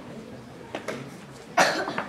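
A single loud cough near the end, preceded by two light clicks of wooden chess pieces being set down on the board.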